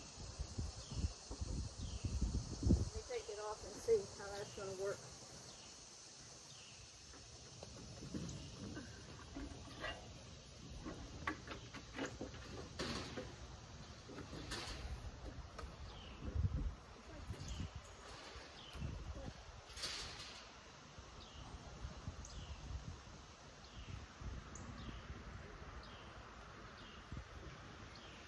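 Knocks and thumps of a person stepping about on a flatbed trailer deck and handling a wooden dog crate, with a few low words at first. A short high chirp repeats about once a second throughout.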